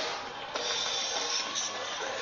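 A steady hissing noise that grows louder about half a second in.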